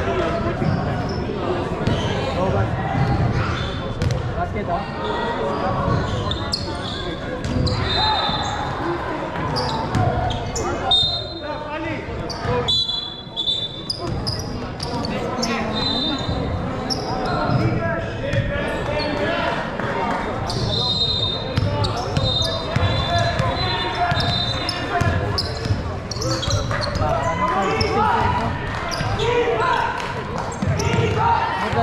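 Basketball game sounds in a large echoing gym: a basketball bouncing on the court floor, scattered voices of players and spectators, and short high squeaks of sneakers at times.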